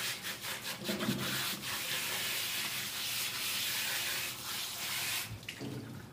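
Hands scrubbing a small dog's wet coat in a plastic tub of water: steady rubbing that stops about five seconds in.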